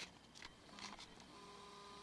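Near silence: room tone, with a faint steady tone coming in about halfway through.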